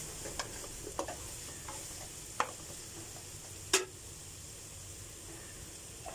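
Grated carrot and sliced onion sizzling in oil in a nonstick frying pan, stirred with a spatula. A few sharp clicks of the spatula striking the pan stand out from the steady sizzle, the loudest about two-thirds of the way in.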